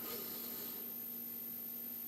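Room tone: a faint steady low hum under a light even hiss, with no distinct event.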